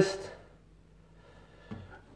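The last word of a man's speech trailing off, then near silence with a faint, short sound near the end.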